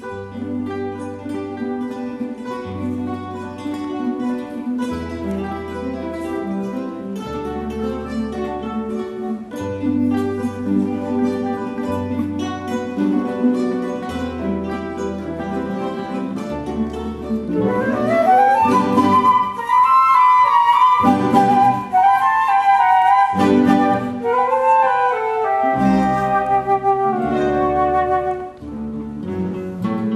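A classical guitar ensemble plays plucked chords over moving bass notes. About halfway through, two flutes come in with the melody over the guitars, and the music grows louder.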